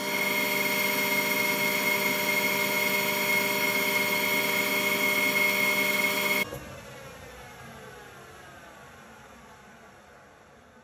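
Metal lathe running at 635 rpm, taking a roughing cut on an aluminium bar with a high-speed steel tool: a steady, high gear whine. About six seconds in, the sound cuts off suddenly, then faint falling tones fade as the machine slows.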